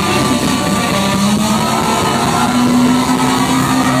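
Live rock band recorded from the audience, loud and distorted, playing long held notes, one high and one low, over a dense wash of sound.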